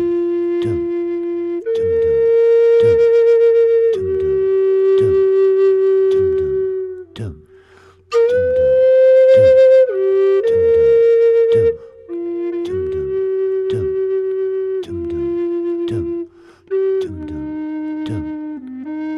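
Low C minor Native American flute by Ron Stutz playing long held tones, roughly one note per bar, over a looped vocal 'dum dum' beat that repeats about once a second. The flute rests briefly near the middle, then comes back with a wavering tone and a few quicker note changes.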